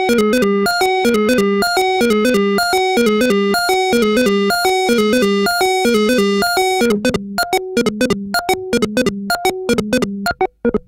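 Minimal techno track built on a repeating square-wave synth melody of short notes. About seven seconds in, the fuller layer drops away, leaving sparse, clipped notes.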